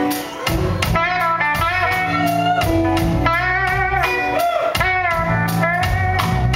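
Live blues band playing a slow blues: an electric guitar plays a line of bent, wavering notes over bass and drums.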